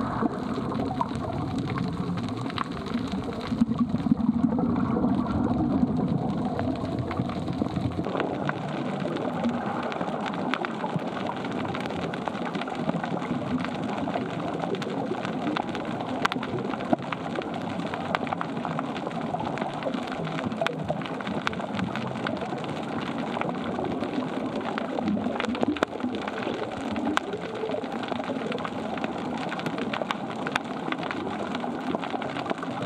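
Underwater ambience: a steady crackling hiss made of countless tiny clicks, with soft background music. A low rumble under it drops away about eight seconds in.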